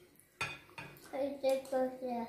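Metal cutlery clinking against a ceramic plate of noodles while eating, with two sharp clinks about half a second and a second in.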